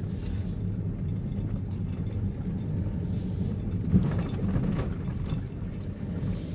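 Steady low rumble of engine and tyres heard inside a moving car's cabin, with one brief knock about four seconds in.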